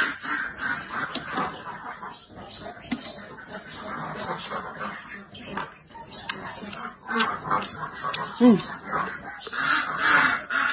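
Domestic ducks quacking on and off, with crisp chewing clicks close to the microphone.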